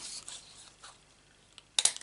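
Handheld hole punch cutting a dot from navy cardstock: soft handling of the card, then a quick sharp snap of clicks near the end as the punch closes.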